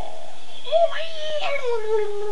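A man's high-pitched falsetto vocal cry: one long, wavering note that starts about half a second in, is loudest just under a second in, then slides slowly downward.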